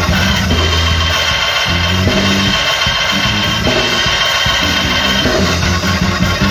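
Loud, continuous band music with a drum kit and held bass notes that change about every second.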